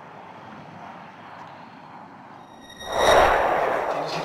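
Low steady outdoor hiss, then about three seconds in a sudden loud rushing whoosh with a faint high ringing, which swells quickly and fades slowly across the cut to the flashback: a transition sound effect.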